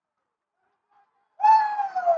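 A person's high-pitched, drawn-out vocal cry starting about one and a half seconds in and falling steadily in pitch, a shout of reaction as a runner comes in to score.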